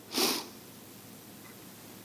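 A woman's single short sniff through the nose, followed by quiet room tone.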